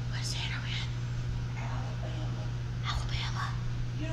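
Soft whispering in a few short, breathy snatches, over a steady low hum.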